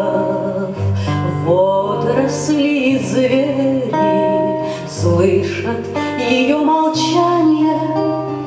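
A woman singing a song to her own plucked nylon-string classical guitar accompaniment.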